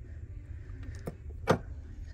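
Steady low room rumble with small handling clicks as a little porcelain-and-brass piece is handled and set back down on a display shelf, with one sharp tap about a second and a half in.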